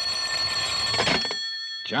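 Telephone bell ringing, a steady metallic ring that breaks off about a second in, as the call is answered.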